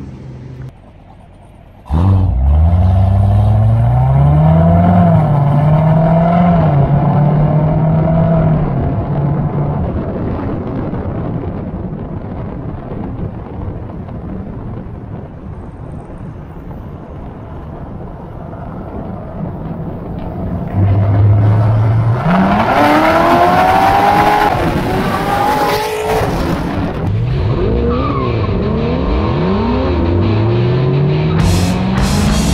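Corvette V8 engines accelerating in convoy. The pitch climbs and drops back again and again as the cars run up through the gears, with a louder, harder acceleration about three quarters of the way through.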